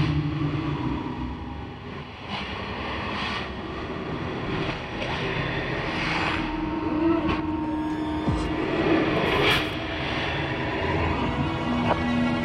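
Horror-film score: a low rumbling drone with several sudden hits spread through it and a held tone in the middle.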